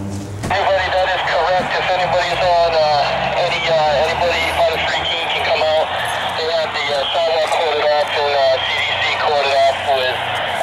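Talking that the recogniser caught no words from, heard thin, with little low end, as if through a small speaker or radio or at some distance.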